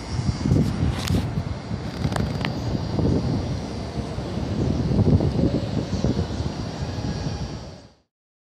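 Outdoor city ambience: a low, uneven rumble with a couple of brief clicks, fading out near the end.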